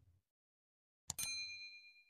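Notification-bell sound effect: a single bright bell ding about a second in, ringing on at a few clear pitches and fading, as the bell icon of a subscribe animation is switched on.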